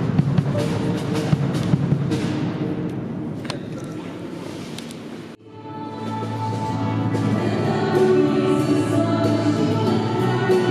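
Drums being played in a reverberant church, the hits fading off about halfway through. Then an abrupt cut to music with sustained sung notes over a steady low bass.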